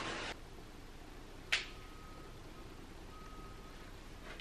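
Quiet room tone, broken by one sharp click about a second and a half in. A faint high steady tone comes and goes.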